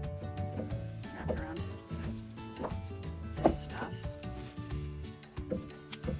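Dry grass stalks and dead weed stems rustling and crackling as they are handled and arranged in a bundle, in several short crisp bursts, the loudest about three and a half seconds in. Background music with sustained notes plays underneath.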